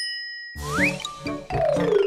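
A bright ding sound effect that rings and fades away over about half a second, followed by background music with quick rising swoops.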